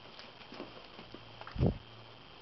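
A Cavalier King Charles spaniel moving about close to the microphone: faint scattered ticks and rustles, and one short, low, muffled thump about one and a half seconds in.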